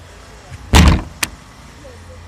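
Plastic wheelie-bin lid banging shut: one loud thud a little under a second in, followed by a short sharp click.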